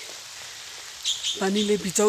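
A woman speaking in short phrases, starting about a second in, over a steady faint hiss.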